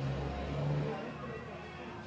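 A motor vehicle's engine in street traffic, loudest in the first second and then fading, with the voices of a crowd underneath.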